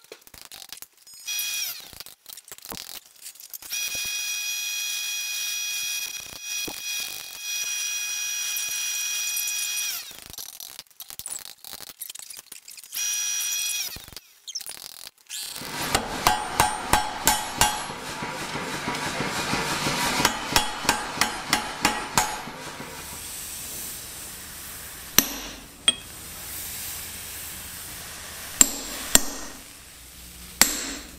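Forging hot steel: a quick run of power-hammer blows, about three a second, for several seconds past the middle, then a few single sharp hammer strikes on the anvil near the end. Earlier there are scattered light metal clicks and a steady high ringing tone lasting several seconds.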